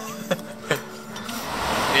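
Two sharp clinks of tableware, under half a second apart, then a swell of background noise near the end.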